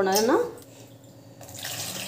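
Water pouring from a steel mug into a steel pot of tomatoes. It starts about one and a half seconds in and runs steadily.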